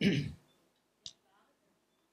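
A man's brief vocal sound at the start, then a single sharp click about a second in, with near silence around it.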